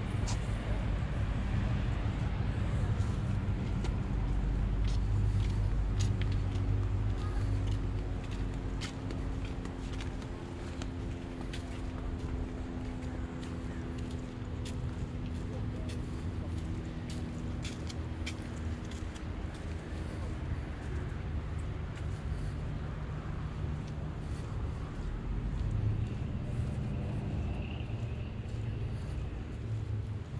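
Outdoor background noise: a steady low rumble with the engine hum of passing road traffic through the middle stretch, and light clicks of footsteps on a paved garden path.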